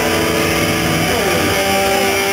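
Loud, distorted electric guitar through an amp, holding sustained notes, with one note sliding down in pitch about halfway through.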